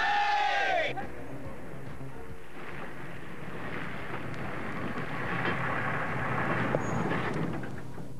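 A shouted "hooray" tails off, then a truck runs by hauling a shipping container: a steady engine rumble and road noise that swells louder in the second half.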